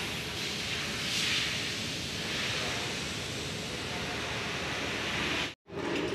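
Wind rushing over a phone's microphone, rising and falling in gusts with a swell about a second in, cutting out abruptly for an instant near the end.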